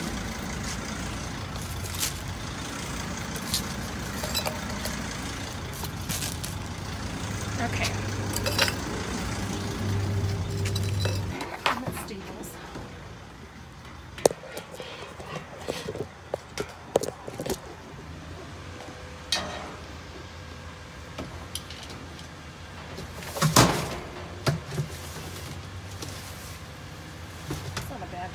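Low steady hum for about the first eleven seconds, cutting off abruptly, then scattered knocks and clatter of a metal dumpster lid being lifted and items being handled, with one loud bang about twenty-three seconds in.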